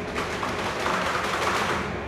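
Ten-inch manila rope tightening on a ship's windlass: a rasping strain that swells to its loudest a little past the middle and eases off near the end.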